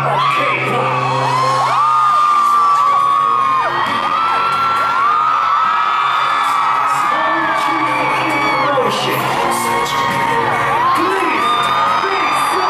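Live hip-hop music played loud through a venue sound system, with a low bass line changing notes, while the crowd screams and whoops over it.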